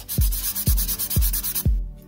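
Plastic drone body and folding arm creaking and rubbing as they are squeezed and flexed by hand, a sign of cheap, flimsy plastic. Background electronic music with a steady beat of about two kicks a second plays under it.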